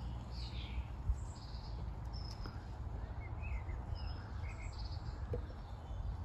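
Small birds chirping and calling in short, scattered phrases over a steady low rumble.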